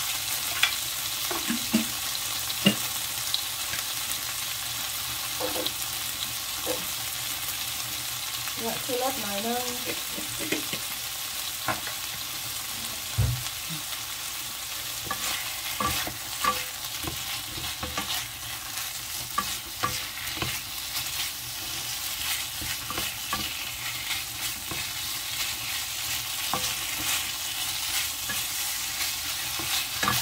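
Pork pieces and red curry paste sizzling in a nonstick frying pan while a wooden spatula stirs and scrapes through them, with irregular clicks and knocks of the spatula against the pan. A single low thump comes about halfway through.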